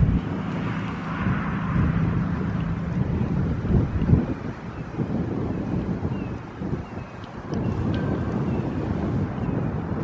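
Wind buffeting the microphone outdoors, an uneven low rumble that swells and dips in gusts, with a faint engine hum fading in the first few seconds.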